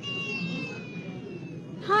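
Recording of a baby crying, played from a laptop as a sound effect: one long wail that slowly falls in pitch and fades out near the end.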